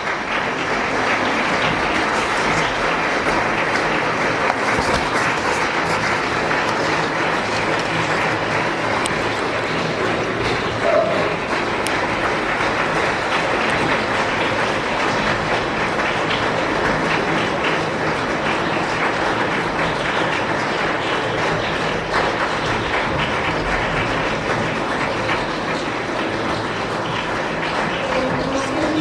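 Audience applauding: a long, steady round of clapping at an even level.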